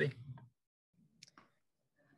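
A person's voice finishing a word, then a quiet pause with two short faint clicks just over a second in.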